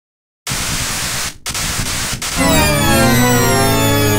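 Opening of an electronic pop song: a burst of static-like noise that cuts out briefly twice, then, about halfway through, synthesizer tones come in over a steady bass, gliding in pitch.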